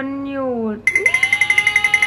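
A woman draws out the end of a word. About a second in, a rapid bell-like ringing, like an alarm clock, cuts in at about thirteen rings a second under a long held vocal sound. It stops suddenly after about a second and a half.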